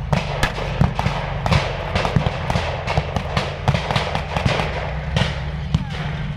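Rapid, irregular blank gunfire from a mock battle, several sharp shots a second, over the steady low running of an armoured vehicle's engine.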